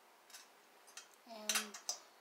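A few light, scattered clicks and ticks of small metal earring parts and pliers being handled against a glass tabletop.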